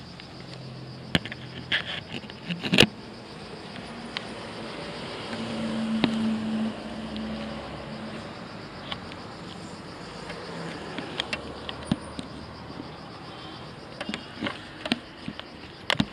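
Handling noise from an action camera: sharp taps and knocks of fingers on the camera and its mount, the loudest about three seconds in, with more taps near the end. Behind them is a low steady hum that swells between about five and eight seconds in.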